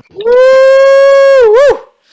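A person's loud, long "woo!" shout of praise, held on one steady high note, then a quick dip and rise in pitch before it breaks off.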